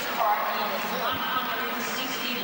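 Speech: a voice talking, in the manner of television commentary, over a steady background hiss.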